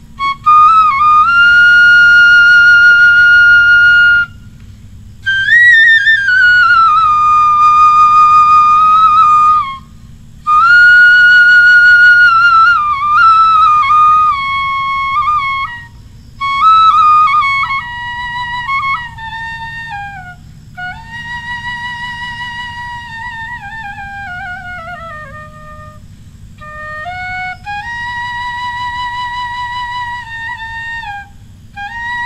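Bamboo transverse flute (bansuri) playing a slow, mournful melody: long held notes joined by sliding bends, in phrases broken by short breaths. The playing is loud at first and softer from about halfway through.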